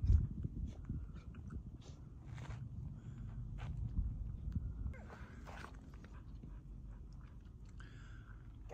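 Footsteps scuffing and crunching in loose dry sand, over a low, uneven rumble of wind on the microphone.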